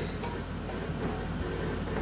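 Crickets chirring in a steady, even pulse, over a low electrical hum.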